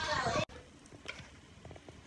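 Food sizzling faintly on a tabletop grill plate, with a few light clicks of metal tongs turning a slice of turnip cake. Before that, about half a second of voices is cut off abruptly.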